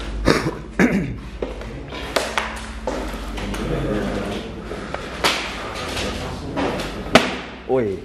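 Footsteps and several sharp knocks on a debris-littered floor, with people talking quietly between them.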